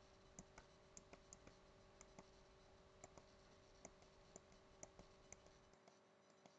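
Near silence with a dozen or so faint, irregular computer-mouse clicks, over a faint steady electrical hum.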